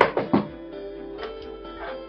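Soft background music with plucked guitar, broken by three quick, sharp knocks in the first half second.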